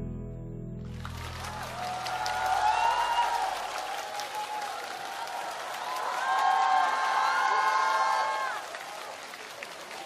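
The last acoustic guitar chord rings out and fades. About a second in, a studio audience breaks into applause with cheering, which swells twice and dies down near the end.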